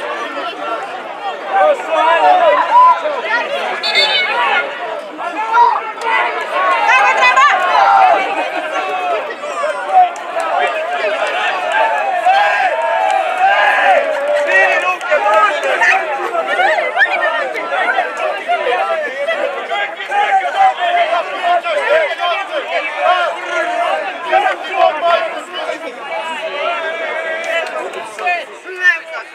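Several people chattering and calling out close by, their voices overlapping continuously: spectators talking among themselves at a football match.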